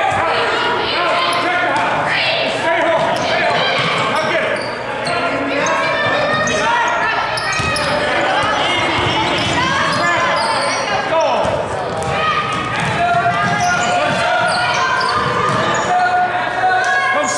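Basketball being dribbled on a hardwood gym floor during a youth game, amid many voices of players and spectators, all echoing in a large hall.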